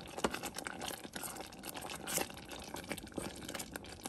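Thick tomato jam bubbling and popping in a stainless steel pot while a wooden spoon stirs it, with irregular small pops and spoon scrapes. The jam is cooked down almost to its setting consistency.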